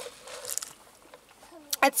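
A short sip of a fountain drink through a plastic straw from a foam cup, a soft sucking noise lasting under a second.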